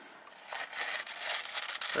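CRKT M16-12ZER folding knife blade slicing through a sheet of paper: a papery, irregular hiss of the edge cutting, starting about half a second in.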